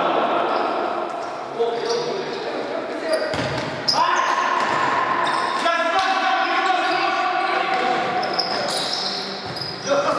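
Futsal ball being kicked and bouncing on a hard indoor court, with players' shouts echoing around a large sports hall.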